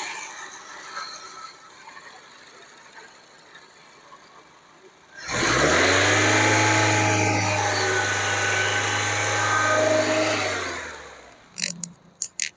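Honda City's four-cylinder petrol engine starting about five seconds in. Its note rises briefly as it catches, then it settles into a smooth, steady idle. The sound stops near the end.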